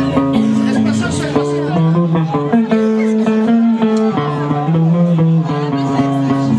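Live band playing: guitar plucking notes over held bass guitar notes.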